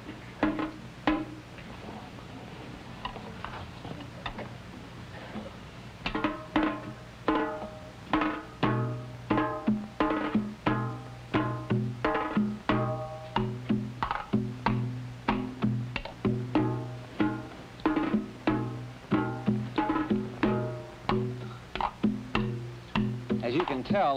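Korean janggu, the hourglass drum with one cowhide and one sheepskin head and rope tension, being played. A couple of strokes come about half a second and a second in. From about six seconds a steady rhythmic pattern of strokes starts, and each one rings with a low pitched tone.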